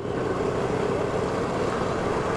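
Steady riding noise from a moving Honda Activa 125 scooter: wind rushing over the microphone mixed with engine and road noise, unbroken and even in level.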